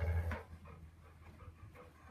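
A large dog panting close by, loudest in the first half-second and then faint.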